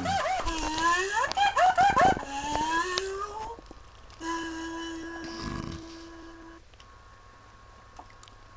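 A person humming a wavering, sliding tune for about three seconds, then a steady held tone for about two seconds, followed by faint room noise.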